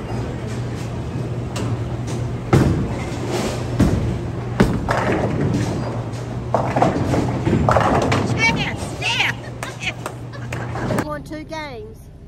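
Bowling alley din: balls rolling down the wooden lanes and pins clattering, with several sharp knocks, over people's chatter and music. It breaks off about eleven seconds in.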